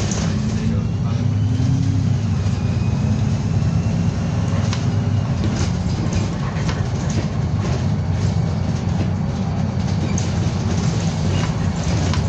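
A Stagecoach Newcastle bus heard from inside, its engine and drivetrain running steadily as it drives along, with a low rumble, a faint rising whine and occasional short rattles.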